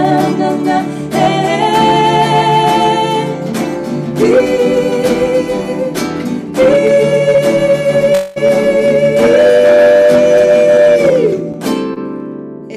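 A woman singing live while strumming an acoustic guitar. A long held sung note near the end closes the song.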